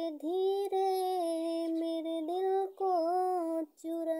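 A young woman singing a Hindi song solo, with no accompaniment, in long held notes that bend in pitch, with short breaks for breath between phrases.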